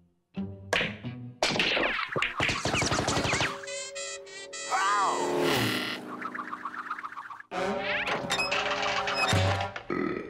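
Cartoon sound effects of a ricocheting pool ball over music: a quick run of knocks and clatter, then a twanging boing and a falling glide, with more knocks near the end.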